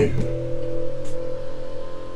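Electric TV lift motor running steadily as it raises a television out of a cabinet, a hum of several unchanging tones.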